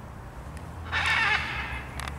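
Scarlet macaw giving one harsh squawk about a second in, lasting about half a second.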